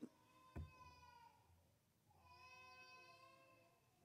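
Near silence, broken by a soft knock about half a second in and by a faint, high, pitched cry heard twice, each about a second long.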